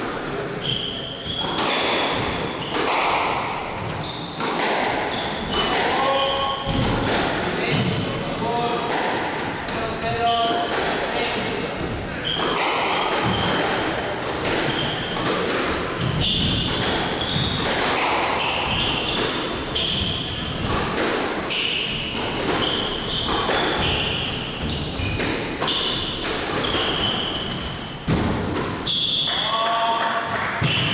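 Squash rally: the ball struck by rackets and hitting the court walls in quick, irregular succession, with shoes squeaking on the hardwood court floor.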